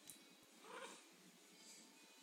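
A cat giving one brief, faint meow about halfway through, otherwise near silence.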